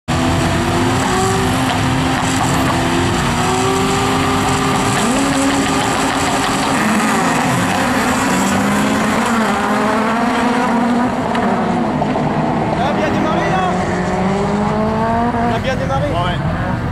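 Several race car engines revving together on the starting grid, their pitches rising and falling and overlapping.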